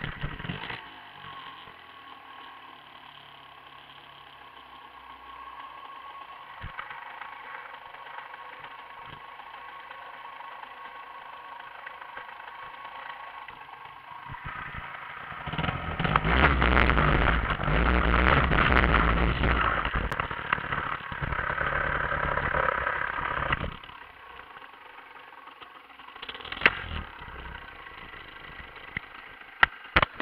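A small moped engine runs quietly, then is opened up and runs much louder for about eight seconds from halfway through, before dropping back.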